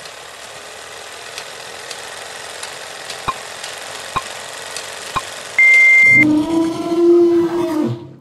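Old-film countdown sound effect: a steady hiss with light crackle and a soft click about once a second, then a short high beep, the loudest thing here, about two-thirds of the way in. A low, steady tone follows, swells, and cuts off just before the end.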